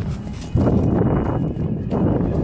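Running footsteps on grass and pavement, with wind and handling rumble on a handheld phone microphone, louder from about half a second in.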